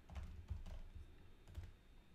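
Faint computer keyboard typing: a handful of separate key clicks over two seconds.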